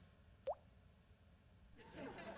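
A single water drop plopping once, a short rising blip about half a second in, against near silence. It is the first drip of water leaking down from a bathtub left running upstairs.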